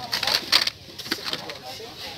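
Blister-packed toy cars rustling and crinkling as they are handled, plastic bubbles and card backs rubbing. The handling is loudest in the first half-second, then softer.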